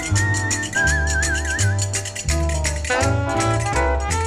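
Whistled melody with a wide, wavering vibrato over a small band with bass, chords and a steady clicking percussion beat. The whistle holds a couple of long notes in the first half, then the band's instruments take over the line.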